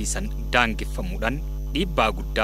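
A loud, steady low electrical mains hum in the audio feed, with a man's voice speaking into podium microphones over it in short stretches.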